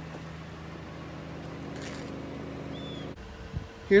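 A car engine idling with a steady low hum, which cuts off suddenly about three seconds in.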